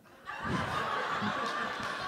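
Live audience laughing: a steady crowd laugh that sets in just after the start and eases slightly toward the end.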